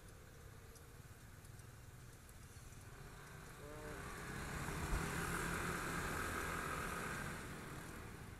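Motor scooters at a traffic stop pulling away together, their engine and road noise swelling from about halfway through and easing near the end.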